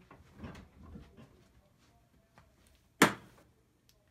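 A single sharp knock about three seconds in, after a second or so of faint soft handling sounds.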